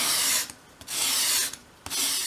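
A small wooden piece drawn in strokes across a flat sheet of sandpaper, sanding a bevel onto its edge: three rasping strokes about a second apart.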